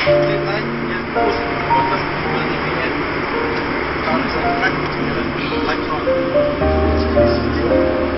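Music with held melody notes stepping from pitch to pitch over a low bass line, heard over a steady background noise.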